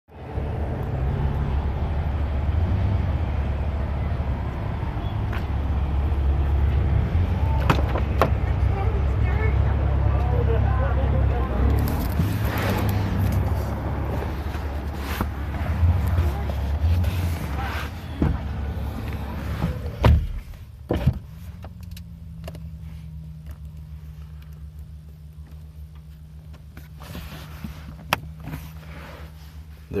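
Phone-microphone rumble and handling noise with scattered clicks, then a few sharp thumps about twenty seconds in. After them the sound drops to a quieter car cabin with a steady low hum.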